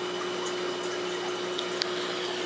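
Steady rush of water with a constant pump hum from aquarium filtration, and a faint click near the end.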